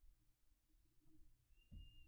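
Near silence: room tone, with a faint low thump and a brief thin high tone near the end.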